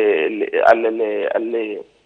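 A man talking over a telephone line with a thin phone sound. He breaks off near the end.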